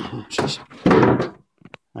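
A wooden expansion leaf from an IKEA extending table being handled and set aside: a few light knocks, then one loud thud about a second in.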